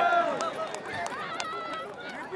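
People's voices talking and calling out in a pause of the amplified speech, with a couple of brief sharp clicks.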